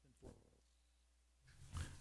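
Near silence: room tone, with one faint brief sound about a quarter second in.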